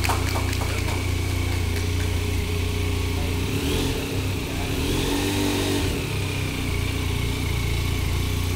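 Benelli 502 TRK's 500 cc parallel-twin engine idling steadily.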